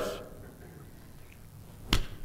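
A quiet pause in a room, broken near the end by one short, sharp click or knock.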